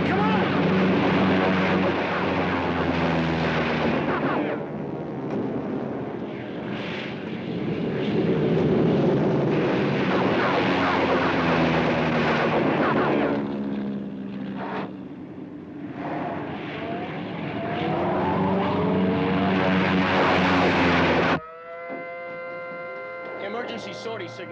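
Air-raid sound effects: propeller aircraft engines droning, their pitch sweeping up and down as planes dive and pass, over a heavy mix of bomb explosions. About three-quarters of the way through it cuts off abruptly to a quieter passage with a few steady held tones.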